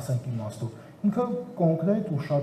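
Speech only: a man talking, with a brief pause a little under a second in.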